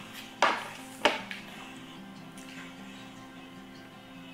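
Two sharp knocks of crockery on a table in the first second, about half a second apart, over soft background music.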